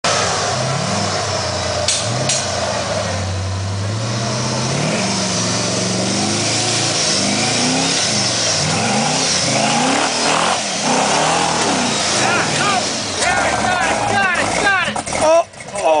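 Jeep V6 engine revving under load as the Jeep crawls up a steep dirt hill climb, its pitch rising and falling again and again as the throttle is worked. Near the end, people shout over it.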